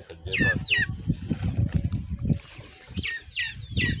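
A bird calling with short, sharp falling chirps: two near the start and three near the end. Low rustling and knocking runs underneath.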